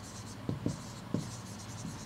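Handwriting on a board: the scratching of a writing tip forming letters, with a few short strokes and taps.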